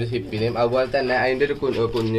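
Domestic pigeon cooing, mixed with a person's voice, over a steady low hum.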